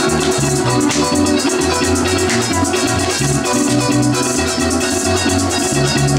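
Live Colombian joropo music, fast: a harp plucking a running melody and bass line, driven by maracas shaken in a rapid, unbroken rattle.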